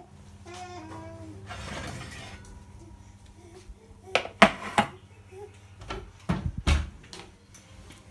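Metal cupcake tin and bakeware knocking and clattering as the baked cupcakes are handled, with a cluster of sharp knocks about four seconds in and another about six seconds in, over a low steady hum.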